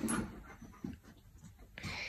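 Faint sounds of dogs playing together, with one short knock just under a second in.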